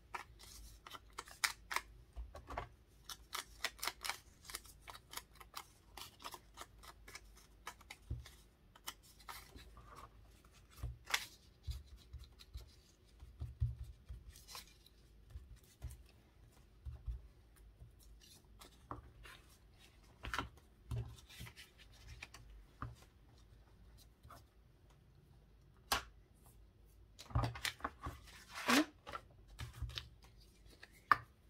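Paper being handled on a craft mat: irregular rustling, crinkling and small clicks and taps as hands work paper embellishments and an ink blending tool, with a louder cluster of rustles near the end.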